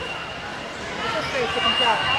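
Several overlapping voices of players and spectators in a reverberant gymnasium, getting louder about a second in.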